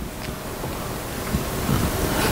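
A rushing noise on the microphone that slowly grows louder, like wind or rubbing on the mic.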